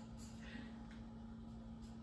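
Quiet room tone: a steady low hum with a few faint, soft rustles.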